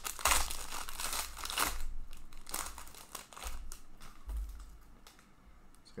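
Foil wrapper of an Upper Deck Engrained hockey card pack crinkling and tearing as hands rip it open, loudest in the first two seconds, then sparser rustles that fade.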